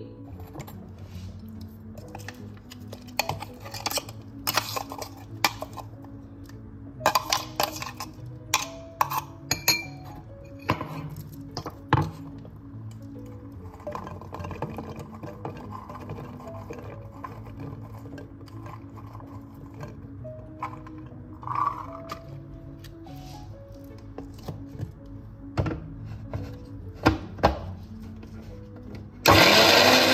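Steel bowl and steel mixer-grinder jar clinking and knocking as sweet corn is tipped in, over soft background music. Near the end an electric mixer grinder runs in one short, loud burst of about a second.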